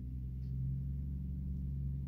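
Trucks driving by, heard from inside a parked van: a steady low engine drone that builds slightly.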